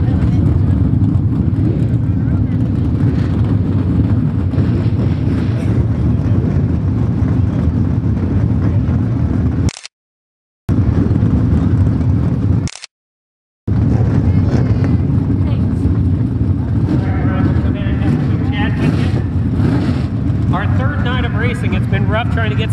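A steady low engine rumble from vehicles running at the track, cutting out briefly twice midway. Voices come in over it during the last few seconds.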